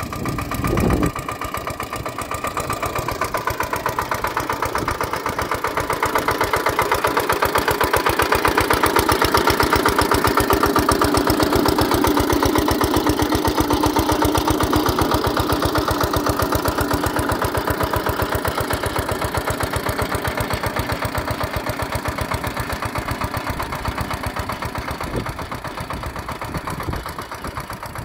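Small engine of a walk-behind power weeder running steadily under load, a fast even firing rhythm that swells through the middle and fades toward the end.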